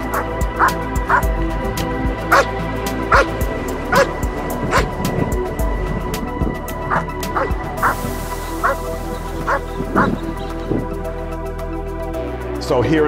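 A dog barking in short, repeated barks, about one or two a second with a pause around the middle, over background music with long held tones.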